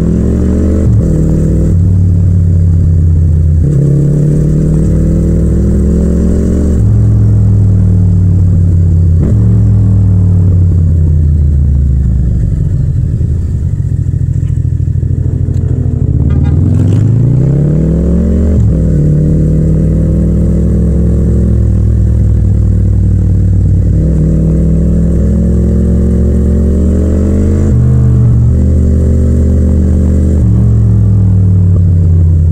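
Yamaha MT-07's 689 cc parallel-twin engine pulling through the gears in stop-and-go riding, its pitch climbing and then dropping at each upshift or roll-off. It eases to a low, slow run around the middle, then revs up quickly again about sixteen seconds in.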